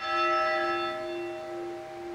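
A church bell, rung from below by its rope, struck once and ringing on with several steady tones that slowly fade. It is one stroke of a memorial tolling, once for each thousand dead.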